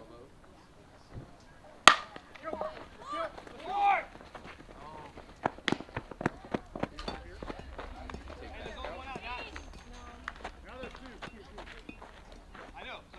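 Aluminium baseball bat hitting a pitched ball with one sharp crack about two seconds in, followed by shouting voices and a string of sharp claps.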